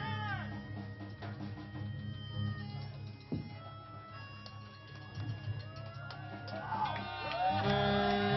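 A small hand-held horn played in wavering, sliding notes over a sustained low drone from the band's amplifiers. It is quieter in the middle and swells louder near the end.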